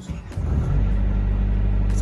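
A large engine, likely a truck's diesel, comes on about half a second in and then runs with a steady low rumble.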